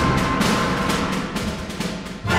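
Full symphony orchestra playing a loud passage with repeated percussion strokes, easing off slightly toward the end.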